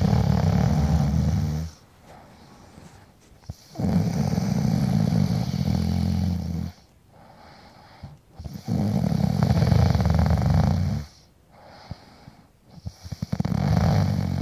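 A person's loud, rasping, snore-like breathing, four long drawn-out breaths of two to three seconds each with quieter pauses between them.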